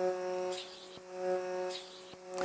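Vacuum-cupping suction machine running with a steady hum, with a couple of brief soft hisses as the suction cup glides over the skin.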